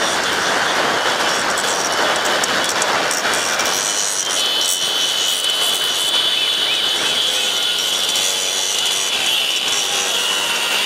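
Wind rush and the running engines of many motorcycles, heard from a moving vehicle riding among the pack: a steady rushing noise, with a steady high whine joining about four seconds in.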